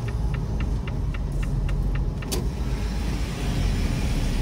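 Semi-truck diesel engine running with a steady low rumble, heard inside the cab in slow traffic. A light ticking, about four times a second, runs through the first half and then stops.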